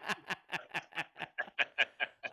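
Hearty laughter in quick breathy pulses, about six a second, running on without words.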